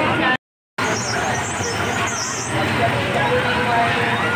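Busy fairground crowd babble with a steady background din of voices and machinery. The sound drops out completely for under half a second just after the start.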